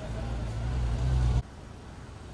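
A motor vehicle's engine rumbling close by, growing louder, then cut off abruptly about a second and a half in. Quieter street noise follows.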